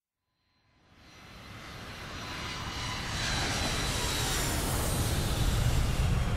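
Jet airliner flying low overhead: its engine noise swells up out of silence about half a second in and grows steadily louder, a deep rumble with a high turbine whine over it.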